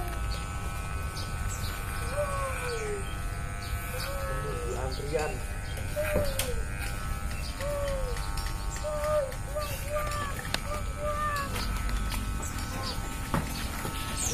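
Electric hair clippers humming steadily while cutting hair. Over the hum, an animal calls again and again in short falling notes.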